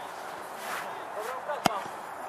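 A football kicked once: a single sharp thud of boot on ball near the end, with faint voices in the background.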